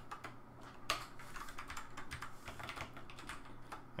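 Typing on a computer keyboard: an uneven run of quick keystrokes, the sharpest about a second in, over a faint steady hum.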